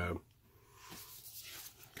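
Faint rustle of a vinyl LP being handled and slid into its black inner sleeve, starting about half a second in.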